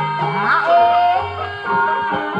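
Traditional Javanese music accompanying a kuda kepang (ebeg) dance: many steady ringing tones over a low pulsing part. A high voice wavers upward about half a second in, then holds a note for about half a second.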